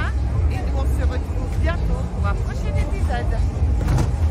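Speech: a woman talking, over a steady low rumble of outdoor background noise.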